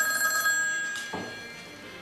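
A wall-mounted telephone ringing: one ring that fades out about a second and a half in.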